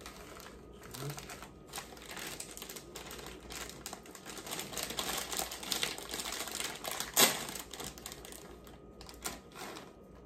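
Plastic bag of tapioca starch being handled and opened: dense, rapid crinkling and crackling, with one louder sharp crackle about seven seconds in.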